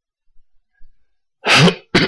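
A pause with a few faint small noises, then near the end a man clears his throat into his hand in two harsh bursts.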